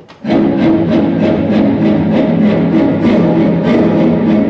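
Recorded orchestral music with strings, cutting in suddenly about a quarter of a second in and playing loud with a steady pulse of about three beats a second.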